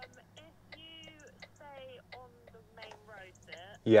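A voice speaking over a phone, heard faintly from the handset's earpiece, with light ticking throughout over a steady low hum. A loud 'yeah' from a nearby voice comes just before the end.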